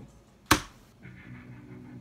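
One sharp click about half a second in, followed about a second in by a steady, low-pitched musical drone as the soundtrack of the animated stick-figure fight begins playing.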